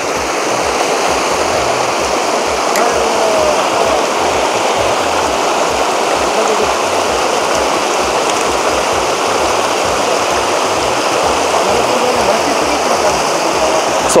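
A shallow mountain stream running steadily over rocks and gravel: a constant, even rush of water.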